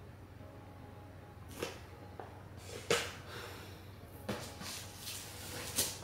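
Handling noises at a table as cookies are decorated with piping bags of icing: about five short rustles and soft knocks of plastic bags and a cardboard cookie box, over a low steady hum.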